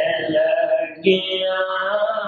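A man's voice chanting a devotional hymn in long held notes, with a brief break about a second in.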